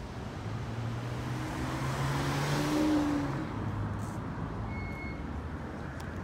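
A car passes by on the street, its engine and tyre noise building to a peak about halfway through and then fading away.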